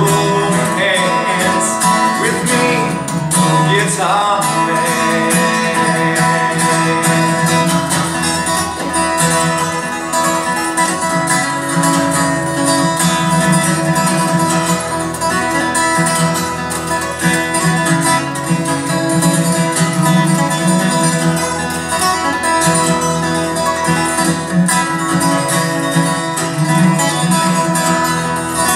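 Acoustic guitar played solo in an instrumental break: a busy run of quickly picked notes and chords at a steady, even loudness.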